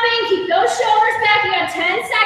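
A woman's high-pitched voice, drawn out in held tones, with no clear words.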